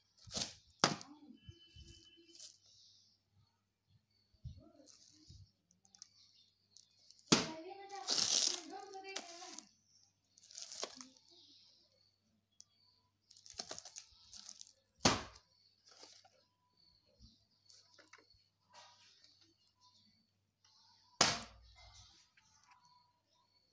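Plastic shrink-wrap on VHS cassette boxes crinkling as they are handled, with a few sharp knocks as the boxes are set down on a tiled floor.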